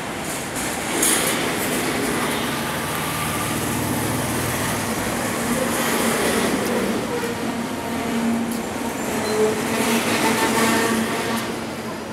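Norfolk Southern double-stack container train rolling past: a steady, dense rumble of freight car wheels on the rails that holds level throughout.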